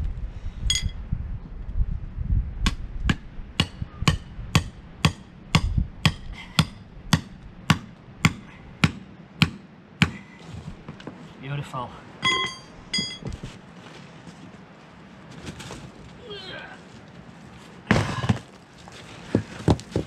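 Hammer driving a steel chisel into a sandstone slab: a steady run of sharp strikes, about two a second, for some seven seconds. A few ringing metallic clinks follow, and near the end a heavy knock.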